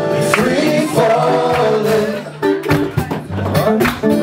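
Live acoustic band music: a strummed acoustic guitar with a voice singing into a microphone.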